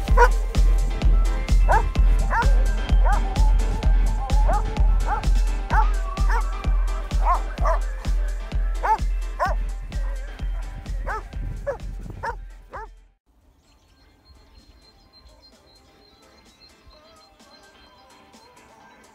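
Background music with a steady heavy beat, about three beats a second, with dogs barking and yipping over it. The music stops suddenly about 13 seconds in, leaving only faint background sound.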